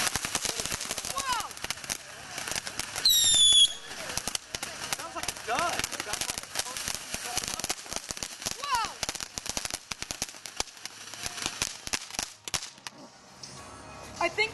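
Ground fountain firework spraying sparks, a dense rapid crackle throughout. About three seconds in there is a brief loud high whistle that falls slightly in pitch.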